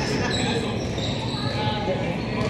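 Steady background noise of a large indoor sports hall, with faint, indistinct voices of players huddled close together.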